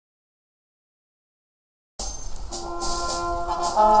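Total silence, then about halfway through a philharmonic wind band cuts in suddenly mid-piece, with brass holding chords over a bright percussion shimmer, growing louder.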